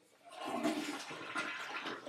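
A toilet being flushed: the rush of water starts a moment in and carries on.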